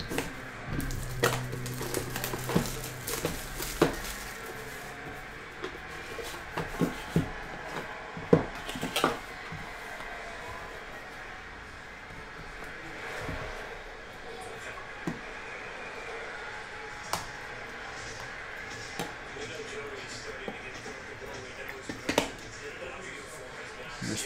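A utility knife slitting a cardboard trading-card box and the plastic wrap of a pack, then cards and packaging being handled: scattered taps, clicks and scrapes over a low background.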